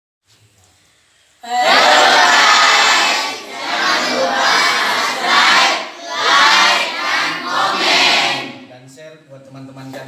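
A large group of children and teenagers shouting together in unison, in four or five loud swells starting about a second and a half in. The shouting dies down near the end, leaving one low voice.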